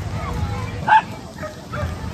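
A single short, high yelp about a second in, over a low steady rumble.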